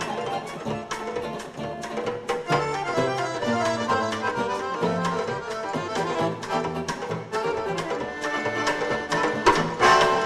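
Live instrumental trio of accordion, electric archtop guitar and drum kit playing a lively tune, with the accordion's sustained notes over guitar and regular drum and cymbal strokes.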